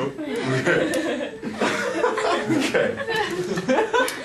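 People chuckling and laughing amid overlapping talk, with a man among them laughing.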